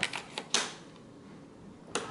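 A hotel key card slid into a plastic wall card holder: a few short plastic clicks and scrapes, the loudest about half a second in. Near the end, a single click as the wall switch for the blinds is pressed.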